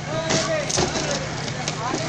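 Several people talking in the open, over a steady low hum, with two sharp knocks, about a third of a second and three-quarters of a second in.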